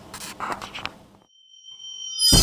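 Faint room noise, then an abrupt cut about halfway through, followed by a steady, high-pitched electronic tone like a beep.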